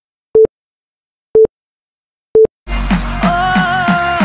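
Countdown-timer beeps: three short single-tone electronic beeps, one a second, then music with a steady beat starts about two and a half seconds in.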